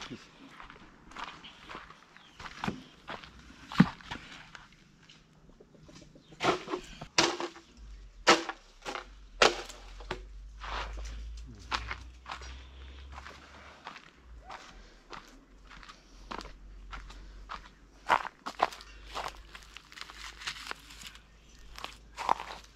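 Footsteps on dry ground strewn with twigs and leaves: an irregular series of crunches and snaps, a few of them sharper and louder knocks.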